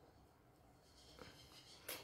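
Near silence: quiet room tone with two faint ticks, one a little past a second in and one just before the end.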